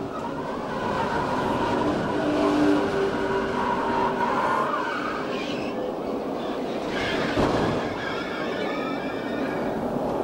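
On-board camera sound of a NASCAR stock car caught in a multi-car crash: steady engine and wind noise with some whining tones over it, and a sudden bang about seven seconds in.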